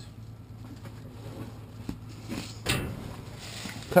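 Cardboard boxes and a plastic bag being shifted and pulled through dumpster trash: a short scraping rustle a little over halfway through, and a softer one near the end, over a steady low hum.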